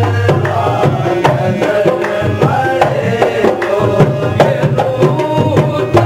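Qawwali music led by hand drums: a rope-tensioned dholak and a metal-shelled drum played with fast, close strokes over a low, steady hum, with a bending melody line above them.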